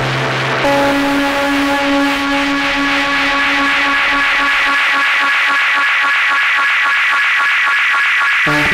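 Electric guitar (Fender Esquire 9-string) processed through an ARP 2600 clone synthesizer. Held notes break up into a fast, even electronic pulsing, and the low end drops out about five seconds in.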